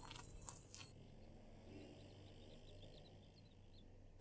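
Near silence: room tone, with a couple of faint clicks in the first second.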